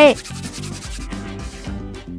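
A rubbing scrape from a metal-framed carry case being handled on a tabletop, over quiet background music. The scrape runs for about a second and a half, then eases off.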